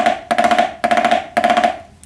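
Snare drum played with sticks: a run of upbeat five-stroke rolls, each a quick burst of strokes beginning with a tap, about two a second, played evenly without accents.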